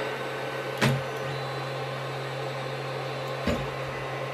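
Creality CR-10 Mini 3D printer humming steadily as it reheats to resume a print after a power cut, with two short clicks, one about a second in and one near the end.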